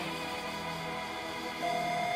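A snippet of an old cartoon's theme music made of sustained notes. A new high held note comes in about one and a half seconds in.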